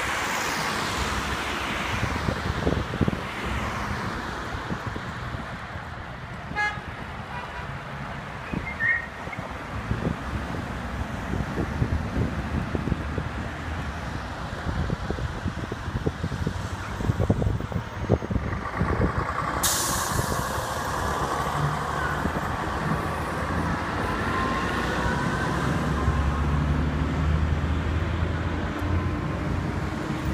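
City traffic at an intersection: cars and an articulated city bus driving past, engines and tyre noise. A sudden hiss sounds about twenty seconds in, and near the end an engine rises in pitch as a vehicle pulls away.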